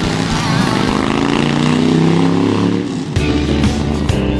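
Motorcycle engine revving, its pitch rising and falling for about three seconds, then guitar music kicking in near the end.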